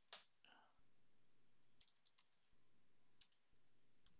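Near silence with a few faint computer keyboard key clicks as commands are typed, a small cluster about two seconds in and another about three seconds in.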